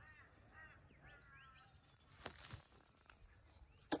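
Faint bird calls: a few short arching notes repeated over the first second and a half, then a few soft clicks near the end.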